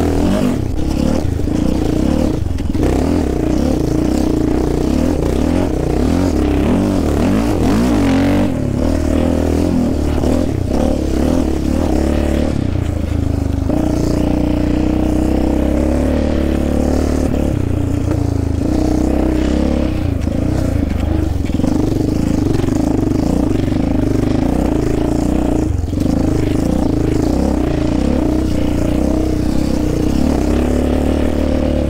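Yamaha Raptor 700R ATV's single-cylinder four-stroke engine running under way, its pitch rising and falling with the throttle, with a few brief dips where the throttle is let off.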